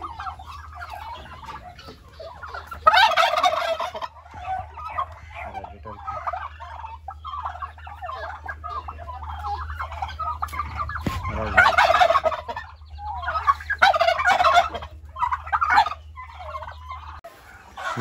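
Domestic turkeys gobbling, call after call, with the loudest bursts about three seconds in and again around twelve seconds in. A steady low hum underlies the calls until shortly before the end.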